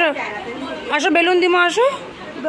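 A woman's high sing-song voice chanting a playful repeated word to a toddler, with a drawn-out held note about a second in.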